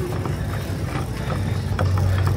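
Store background noise: a steady low hum under a faint haze of room noise, with a few soft clicks.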